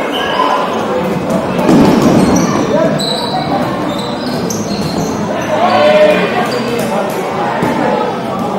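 Dodgeballs bouncing and smacking on a wooden gym floor, as a series of scattered sharp knocks, with players shouting and calling out; everything echoes in a large hall.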